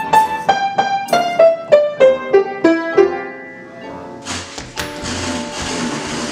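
Upright piano played as a melody of single notes, about three a second, stepping down in pitch over the first three seconds. A rushing noise follows for about two seconds near the end.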